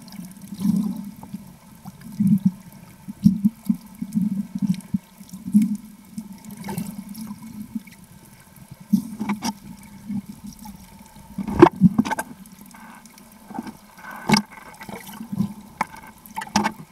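Muffled underwater water noise: irregular gurgling and swishing surges, with a couple of sharp knocks in the second half.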